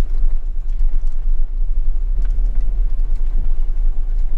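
Camper van's engine running as it moves slowly across a gravel parking lot: a steady low rumble heard from inside the cab.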